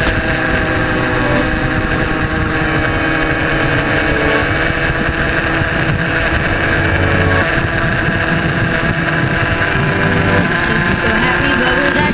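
Supermoto motorcycle engine running at a steady cruising speed, heard from on the bike with wind noise over the microphone.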